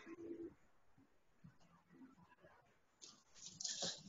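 Near silence: room tone, with one faint, short, low hum in the first half second.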